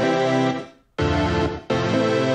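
Synthesizer chord pad from Native Instruments Massive, its volume pumping in rhythm: a performer curve modulates the amp on and off in place of sidechain compression. About halfway in the chord fades out almost to silence and then snaps straight back, with another short dip near the end.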